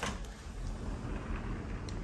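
Steady low rumble of outdoor city background noise, with no distinct event standing out.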